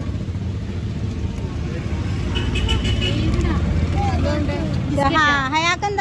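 Low, steady rumble of road traffic and a vehicle engine running close by, with voices talking near the end.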